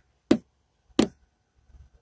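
Two short, sharp knocks, about two-thirds of a second apart.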